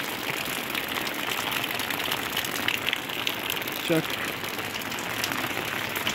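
Steady rain falling, an even hiss of many small drop ticks.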